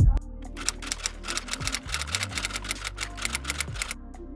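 Rapid typewriter key clicks, a typing sound effect, starting about half a second in, over electronic background music.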